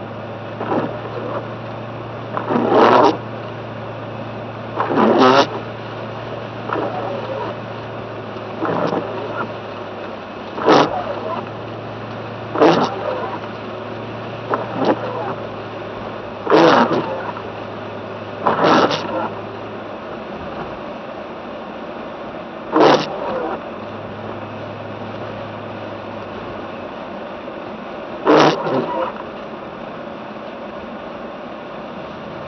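Inside a car's cabin, windshield wipers on an intermittent setting sweep wet snow off the glass, each pass a short scraping swish, coming every two to four seconds. Under them runs a low steady hum from the engine and the tyres on the snowy road.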